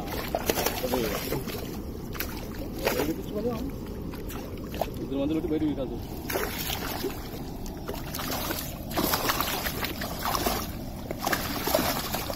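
Fish thrashing in a cast net being drawn in through shallow water, with irregular splashing and sloshing.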